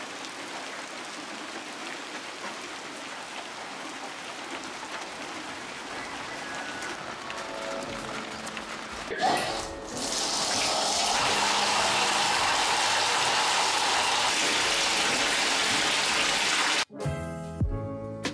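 Steady rain falling on a stone path. About nine seconds in, after a short knock, a bathtub faucet runs full into the tub, louder and steady. It cuts off suddenly near the end as music with a beat comes in.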